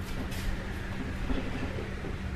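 Steady low hum over a faint rumble, with no distinct events.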